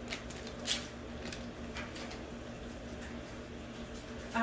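A few soft crinkles and light taps as a packaged brownie-mix pouch is handled and set down on a table, over a faint steady hum.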